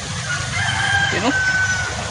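A rooster crowing once: a long, high, held call of about a second and a half that steps down slightly in pitch near the end, over a steady low background rumble.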